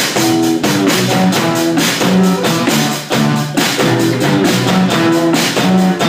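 A small rock band with electric guitar and drum kit begins abruptly on a count-in and plays a repeating riff over a steady drum beat.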